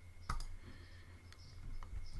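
A few sharp clicks spaced about half a second to a second apart, from a computer mouse being used to switch between browser windows, over a low steady hum.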